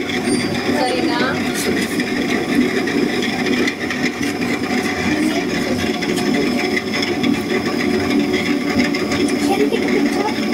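Potter's wheel running with a steady mechanical hum, with voices talking in the background.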